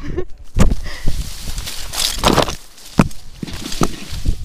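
Leaves and branches brushing and scraping against a rope jumper and her body-worn action camera as she swings into tree foliage, with a few sharp knocks and twig cracks along the way.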